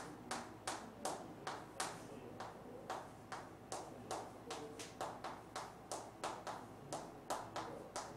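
A string of sharp taps, about two to three a second and slightly irregular, each ringing briefly in a small room.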